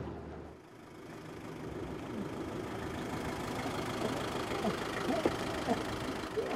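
A vehicle engine idling amid steady outdoor street noise, with faint voices in the background.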